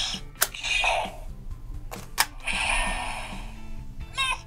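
Hasbro Lightning Collection Yellow Ranger Power Morpher toy playing its electronic morph sound effects through its small speaker: hissing, whooshing energy sounds broken by two sharp hits, about half a second and two seconds in.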